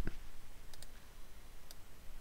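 A few faint computer mouse clicks: two quick ones about three-quarters of a second in and another near the end, as spreadsheet cells are selected.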